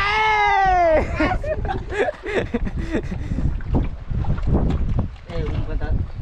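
A man's long shout, falling in pitch over about a second, then broken, excited talk, over a steady low rumble of wind buffeting the microphone.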